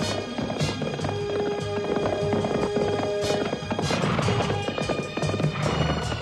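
Galloping horse hoofbeats, a quick run of clip-clops, over action background music with held notes. A brief rush of noise comes about four seconds in.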